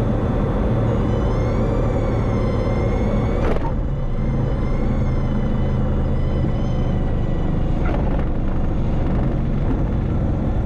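Single-engine propeller aircraft's engine and propeller running steadily as it rolls down the runway, heard from inside the cabin. Background music with wavering high tones is laid over it, and two short clicks come about three and a half and eight seconds in.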